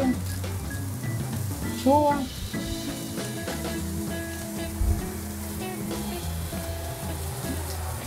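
Steady sizzling of food cooking, under soft background music with held notes.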